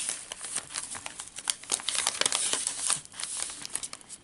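Paper pages and tucked-in tags of a handmade junk journal rustling and crinkling as they are handled and turned, a dense run of crackles that eases off near the end.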